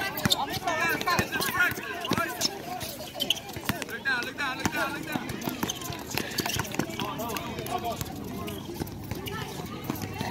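Many overlapping voices of basketball players and onlookers calling and shouting during play, with scattered sharp knocks of the ball bouncing and footsteps on the outdoor court.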